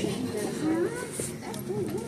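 A quiet background voice with a wavering, rising-and-falling pitch, softer than the nearby talking.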